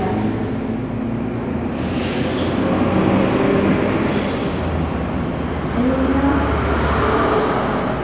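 A steady low rumble, growing louder from about four and a half seconds in to about seven seconds.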